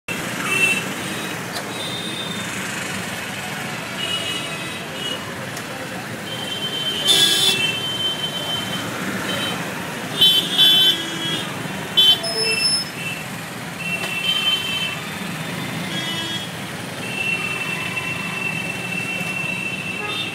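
Dense road traffic with engines running and horns honking again and again: a string of short toots and blasts, and one horn held for about three seconds near the end.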